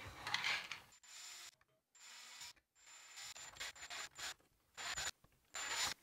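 Cordless drill with a quarter-inch bit boring holes through a plastic project box. There are several short spells of high motor whine with the rasp of the bit cutting plastic, broken by sudden silent gaps.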